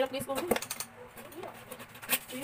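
Coins clinking and dropping against each other and a small container as they are shaken and tipped out, with several sharp clinks in the first second and fainter ones after.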